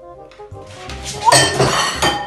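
Ceramic dish falling and smashing on a tile floor: a sudden loud crash about a second in, followed by clattering and ringing as the pieces scatter.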